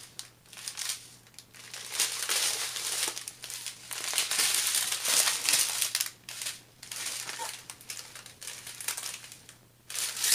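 Small clear plastic bags of diamond-painting drills crinkling as a strip of them is handled and pulled apart. The rustling comes in irregular bursts and is busiest in the middle.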